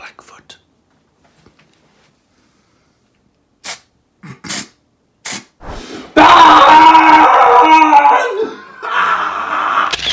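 A man screaming in shock, very loud: one long held scream starting about six seconds in, then a second shorter one near the end. A few short sharp sounds come just before it.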